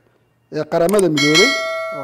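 Notification-bell chime sound effect from a subscribe-button animation: a bright, ringing ding about a second in that rings on and fades slowly.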